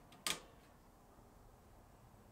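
Charge-controller circuit breaker in a solar power panel flipped by hand: one sharp click about a quarter second in.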